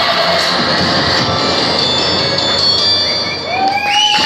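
Dance music playing loudly through a stage speaker, with an audience cheering and shouting over it.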